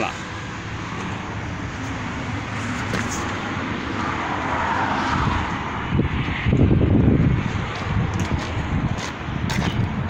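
Footsteps and camera handling noise over a steady background of vehicle noise, with a louder stretch of bumping and rustle about six to seven and a half seconds in.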